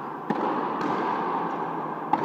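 Frontenis rubber ball struck by a racket with a sharp crack about a third of a second in, followed by fainter knocks of the ball off the court, echoing in the enclosed fronton over a steady background din.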